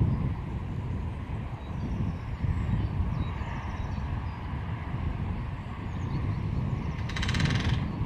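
Wind rumbling on the microphone, and about seven seconds in a short, rapid drum roll of under a second: a great spotted woodpecker drumming on a metal fitting.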